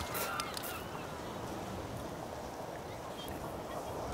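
Steady wash of the sea breaking over shoreline rocks, with faint distant voices in the first second.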